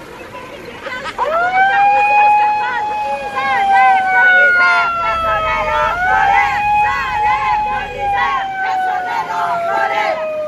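A loud handheld air horn held in long blasts, its pitch sagging slowly and jumping back up about halfway through and again near the end, with many short rising-and-falling toots from other horns or whistles over crowd chatter.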